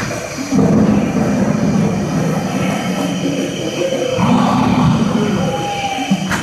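Loud low rumble from the dance performance's soundtrack over the hall's speakers, swelling sharply about half a second in and again just after four seconds, with a few short tones over it.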